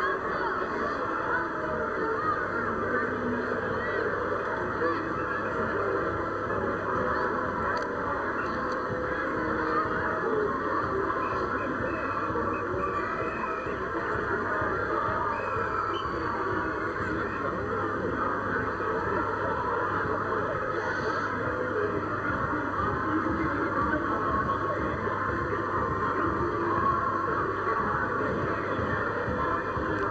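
Steady, dense noise of a street carnival parade crowd, with honking sounds mixed in, heard through a narrow, muffled camcorder soundtrack.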